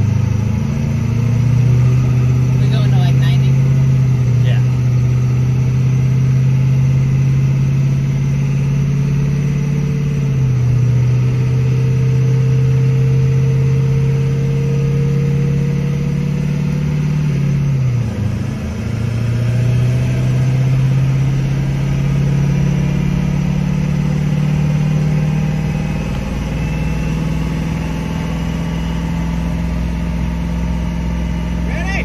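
Vehicle engine running at a steady speed, heard from inside the cab. Its pitch dips sharply and recovers about 18 seconds in, then rises a little and holds higher toward the end.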